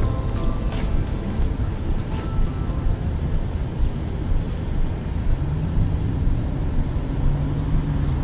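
Background music dying away in the first second or two, leaving a steady low rumble with a motor vehicle's engine hum that rises about five seconds in and holds to the end.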